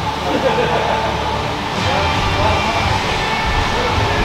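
Auto repair shop ambience: a steady low hum with faint background voices. Background music comes in about two seconds in.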